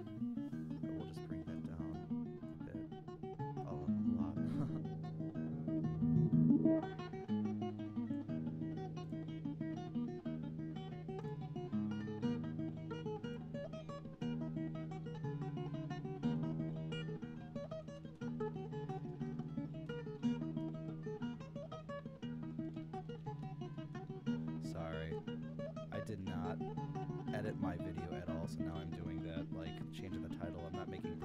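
Recorded fingerstyle acoustic guitar playing a Dorian, Celtic-sounding tune, with plucked melody notes over ringing bass notes. The recording carries some white noise, and its tone is being reshaped live by a parametric EQ: a mid boost and a high roll-off appear partway through.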